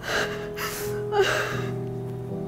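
A young woman crying hard, three gasping sobs about half a second apart, the last the loudest, over soft background music with sustained notes.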